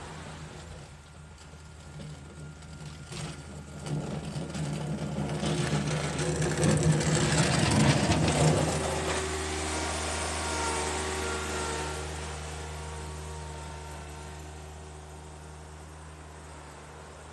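John Deere F935 front mower's three-cylinder diesel engine running as it drives up close with its loader bucket down in the snow. It grows louder to a peak about eight seconds in, with a rush of scraping noise as the bucket pushes through the snow, then drops slightly in pitch and fades as it drives away.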